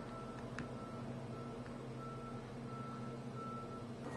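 Low background noise: a steady hum with a faint high tone that pulses on and off about twice a second, and a single faint tick about half a second in.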